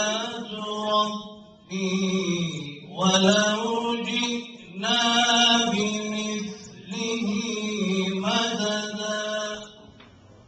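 A man reciting the Qur'an in the melodic tajweed style, into a microphone, in long ornamented phrases held on one breath with short pauses between them. The recitation stops just before the end.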